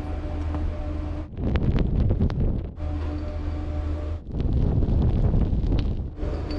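Wind buffeting an action camera's microphone in two louder gusts, over a steady low hum.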